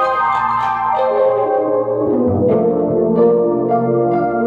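Funk jam played on keyboards with an organ sound: sustained organ chords, with bass notes that drop out and come back about halfway through.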